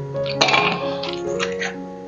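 Background music with held notes, over a few short clinks of ice cubes being dropped into a glass.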